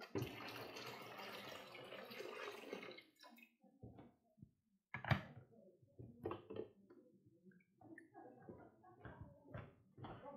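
Faint water running for about three seconds, then a string of scattered knocks and clatter, the loudest about five seconds in.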